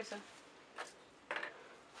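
Two brief rustles of a thin clear plastic sheet being handled on paper, a little under a second in and again about halfway through.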